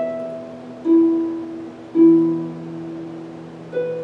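Concert pedal harp played solo: slow, single plucked notes, four in all, each left to ring and die away before the next.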